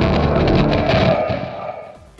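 Tail of a logo intro sting: a textured sound effect with a music bed, fading away over about two seconds.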